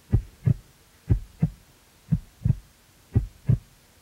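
Heartbeat sound effect: low double thumps, lub-dub, one pair about every second.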